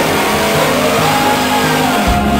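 Classic Dodge Charger's V8 engine revving as the car pulls away, the pitch rising through the first second.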